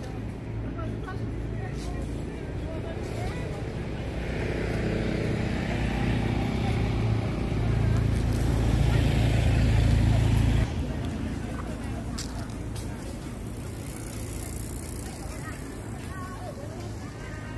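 Street ambience of traffic and people's voices, with a motor vehicle's engine hum building up over several seconds and then cutting off abruptly about eleven seconds in.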